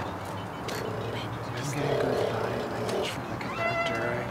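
A small live ensemble playing free-improvised experimental music: scattered clicks and taps, a held wavering tone about two seconds in, and a pitched sound that slides upward near the end.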